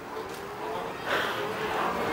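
Faint whine from the Ride1UP 700 Series e-bike's rear hub motor under throttle, rising slowly in pitch as the bike picks up speed. About a second in, a breathy laugh from the rider covers it.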